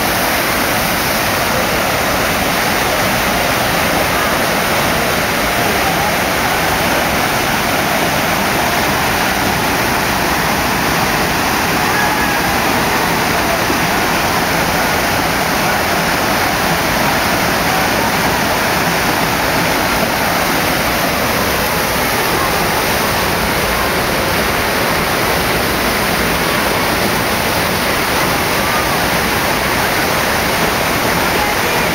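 FlowRider surf simulator's pumped sheet of water rushing up the ride surface: a loud, steady rush of water that never lets up.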